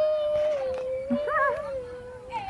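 A young girl's voice holding one long, slightly wavering hum-like note, an engine noise made while playing at driving a toy truck. A short, wavering higher vocal sound cuts in over it about a second and a half in.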